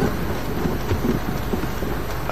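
Open safari vehicle driving on a dirt track: a steady rumble of engine, tyres and wind, with small jolts and rattles.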